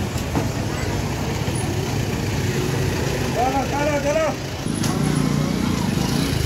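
Motor vehicle engines running amid street noise, with a voice calling out about three and a half seconds in.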